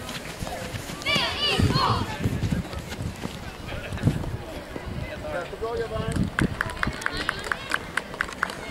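Young children's voices shouting and calling out, loudest a second or two in, followed near the end by a quick run of short sharp slaps or claps, several a second.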